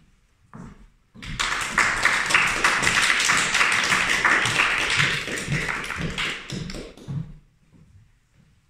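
Audience applauding. The clapping starts suddenly about a second in, holds steady, then thins to a few last claps and dies away near the end.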